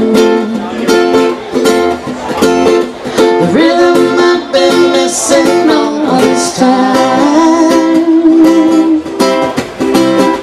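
Ukulele and acoustic guitar strummed together in a live reggae-style song, an instrumental stretch with a steady chopping strum.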